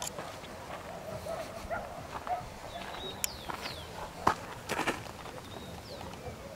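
Outdoor ambience with a few short, high, downward-sliding bird chirps over a steady background hiss, and several sharp clicks and crunches a little past the middle.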